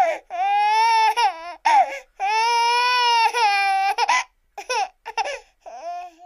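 A baby crying: high-pitched wails, the longest held for nearly two seconds mid-way, breaking into short sobs that trail off near the end.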